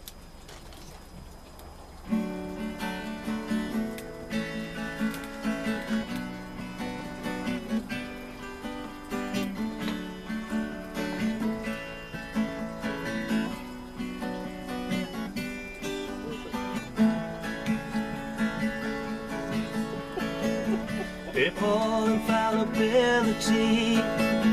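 Acoustic guitar starting a song about two seconds in, played in a steady repeating pattern. A man's voice comes in singing near the end.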